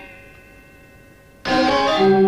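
Balinese gong kebyar gamelan: bronze instruments ringing and fading after a loud stroke, then another sudden loud stroke from the ensemble about a second and a half in that leaves deep tones ringing on.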